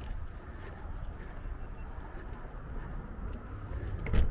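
Footsteps on concrete paving under a steady low rumble of wind on the microphone. About a second and a half in come three faint, short, evenly spaced beeps.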